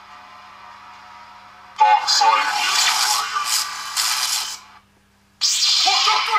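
Recorded audio played through the chestbox controller board's small speaker: after a faint hiss, a loud passage with a wavering, voice-like pitch sets in about two seconds in and stops shortly before five seconds. After a short gap, a second track starts near the end and carries on as music.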